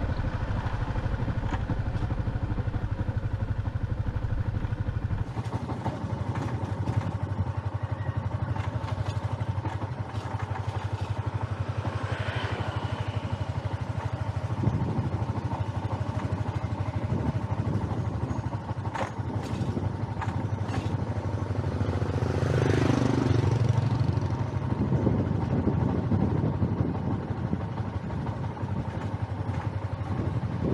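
Motorbike engine running steadily while riding along a lane, its note dipping and rising again a little past two-thirds of the way through.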